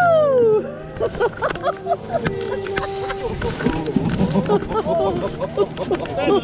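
Several passengers' excited voices, short cries and squeals, as a hot air balloon basket touches down on a grass field, with a few brief knocks.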